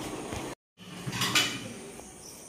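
A plate and cutlery clinking as they are handled at a kitchen sink, with a few light clinks about a second in.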